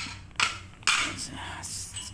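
Metal egg roll molds with iron handles being handled: two sharp metal clanks about half a second apart, then a brief scraping rattle near the end.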